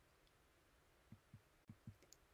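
Near silence: room tone, with four very faint low knocks in the second half.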